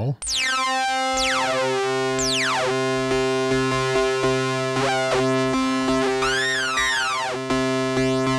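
Moog Muse synthesizer playing an oscillator-sync tone: a steady held low note whose upper overtones sweep, as the filter envelope drives the pitch of the synced second oscillator, giving the classic sync scream. Several quick downward sweeps come in the first three seconds, and a sweep that rises and falls comes a little past six seconds.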